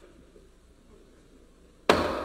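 Quiet room tone, then one sudden, loud knock near the end.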